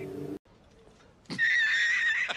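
A man's voice is cut off, and after a short pause an edited-in comic sound effect starts: a high, wavering, held call.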